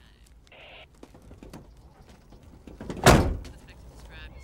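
A car door slams shut about three seconds in: one loud thunk, with fainter small knocks and scuffs before it.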